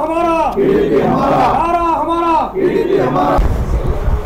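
A group of men shouting a slogan in unison, the same short call repeated about every two seconds.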